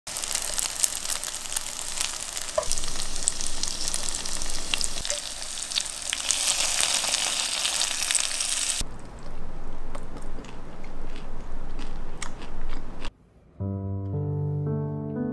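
Tofu blocks sizzling and crackling in oil on a hot iron plate, dense and loud at first, then quieter after about nine seconds. Near the end the sizzle cuts off and soft piano music begins.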